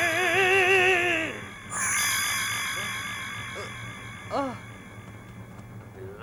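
Eerie synthesized music cue accompanying a magic spell: a held, wavering tone with heavy vibrato. A second or so in, it gives way to a high ringing chord that slowly fades away.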